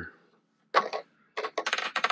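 Small hard plastic winch bushings being set down and handled on a wooden tabletop: a short clatter just before a second in, then a quick run of light clicks near the end.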